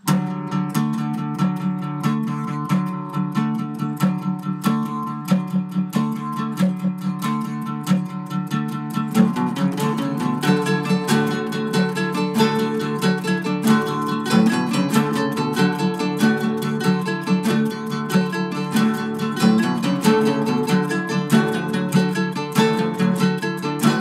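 Acoustic guitar played in a steady rhythm of strummed and picked chords; about nine seconds in the part changes and higher notes come in over the chords.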